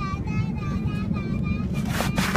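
Airliner cabin noise, a steady low rumble, with a high-pitched voice over it making short wavering notes, then a brief loud rush of noise near the end.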